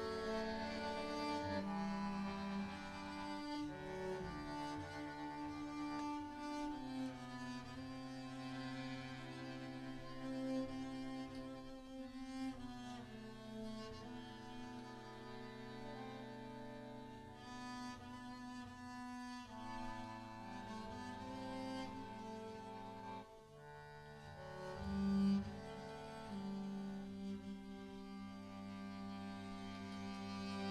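Live tango chamber music in a slow passage, with cello, violin and double bass holding long bowed notes. A double bass note stands out louder near the end.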